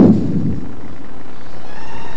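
The tail of a loud shout rings out in a large reverberant hall. Steady room and crowd noise follows, with a faint held whine coming in about one and a half seconds in.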